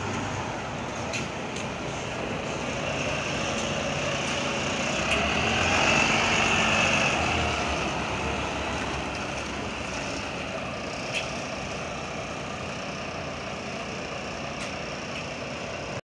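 Volvo B9TL double-decker bus pulling away, its engine getting louder as it passes close by, with a high whine at the loudest point about six seconds in, then fading steadily as it drives off.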